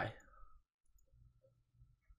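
Near silence after a spoken word fades out, with a few faint clicks of a computer mouse.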